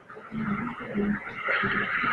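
A person's voice speaking in short bits over a loud hiss, which swells about one and a half seconds in.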